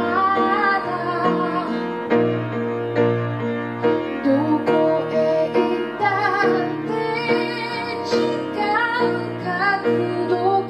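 A woman singing a song while accompanying herself on piano, her voice coming in phrases over sustained piano chords.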